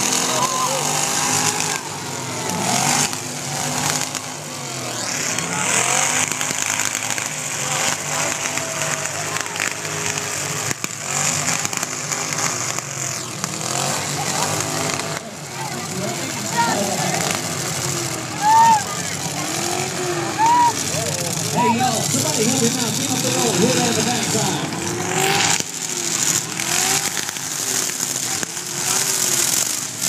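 Demolition derby cars' engines revving and running in the arena, a loud continuous din mixed with crowd voices.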